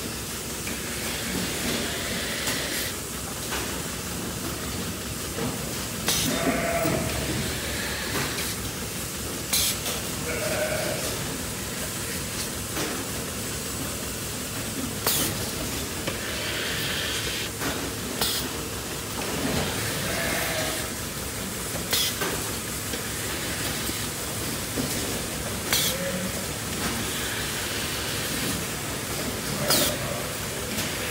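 Steady hiss of a milking machine running in a small-ruminant milking parlour, with sharp clicks every three to four seconds and a few short animal bleats.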